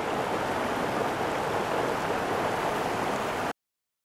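Fast-flowing stream in full flow rushing over rocks and small cascades: a steady roar of water that cuts off abruptly about three and a half seconds in.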